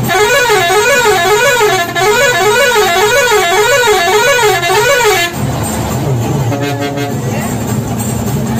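Bus horn sounding a warbling musical tone, its pitch rising and falling about twice a second for some five seconds before cutting off, sounded as the bus closes on the trucks ahead. A shorter steady horn note follows about a second later.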